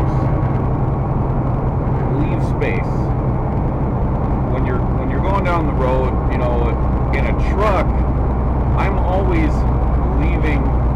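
Steady low drone of a semi truck's engine and road noise heard inside the moving cab.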